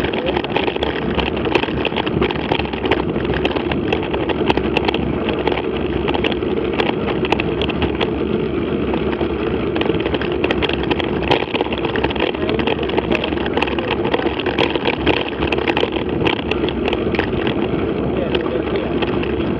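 Mountain bike rolling over a gravel dirt track: a steady rumble from the tyres and the vibrating camera mount, peppered with many small clicks and rattles.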